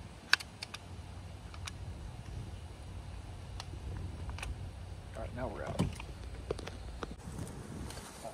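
Sharp clicks and small knocks from an FX Impact Mark 3 air rifle being handled and readied, the loudest one about a third of a second in, over a steady low rumble.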